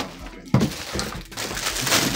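Plastic packaging wrap crackling and rustling as it is handled and pulled off a MIDI keyboard. It starts with a sudden knock about half a second in.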